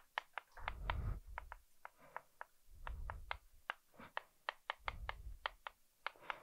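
Chalk writing on a chalkboard: an irregular series of sharp chalk taps and strokes, several a second, with a few dull low knocks from the board.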